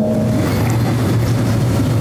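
A steady low rumble with an even hiss over it, a mechanical-sounding background noise with no clear source.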